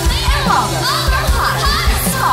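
Indie pop song's backing track with a steady beat, with several voices chattering and calling out together over it.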